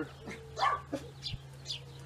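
A dog barking briefly.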